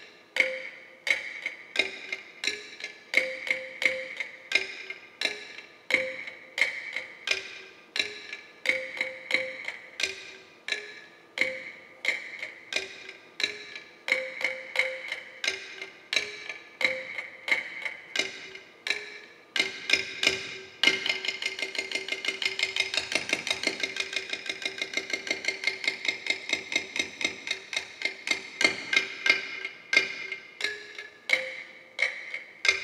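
Cordillera bamboo percussion struck by hand, each stroke a short ringing knock, two notes alternating in a slow, uneven pattern of about one and a half strokes a second. About two-thirds of the way through it breaks into a fast, even run of strikes for about eight seconds, then returns to the slower pattern near the end.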